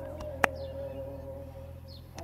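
A single sharp slap of a hand striking the top of a man's head in a percussive head massage, about half a second in. A steady held tone sounds underneath.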